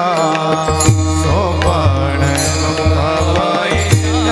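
Devotional kirtan music: a voice singing a wavering, ornamented melodic line over a steady low drone, with a couple of sharp drum strokes about a second in and near the end.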